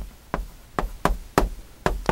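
Chalk striking a chalkboard as words are written by hand: a run of short, sharp taps, about five or six in two seconds.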